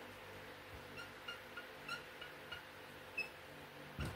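Dry-erase marker squeaking on a whiteboard while handwriting: a series of short high squeaks, one stronger near the end, over a faint room hum.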